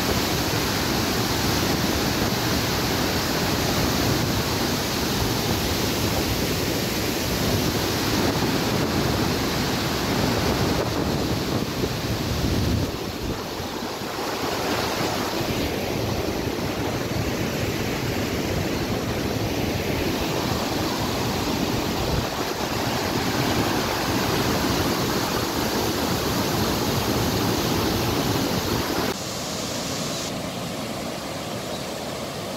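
Steady rush of water pouring through the open gates of a dam spillway. The level drops a little about 13 seconds in and again near the end.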